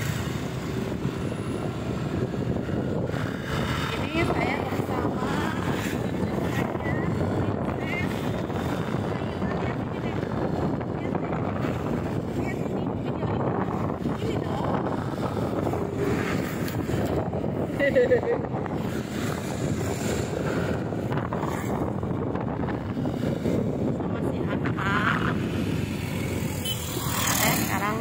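Steady motorcycle riding noise: the engine running with wind and road noise on the microphone, with a few brief snatches of voice.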